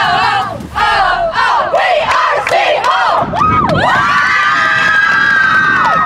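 A group of teenage girls screaming and cheering together in a victory celebration, their high voices overlapping, then joining in one long held scream over the last two seconds that cuts off suddenly.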